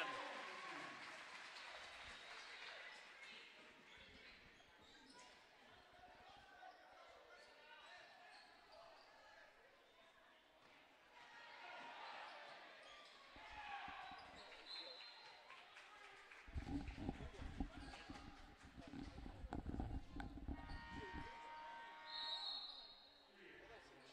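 Basketball game in a gym: a ball bouncing on the hardwood floor and players' footsteps over faint crowd voices. The knocking gets denser and louder about two-thirds of the way in.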